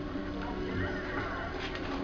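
Programme sound from an old CRT television's speaker: music and a voice, with several held notes.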